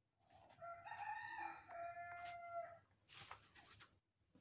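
A faint bird call in the background: one long held call of about two and a half seconds with a steady pitch, followed near the end by a brief soft rustle.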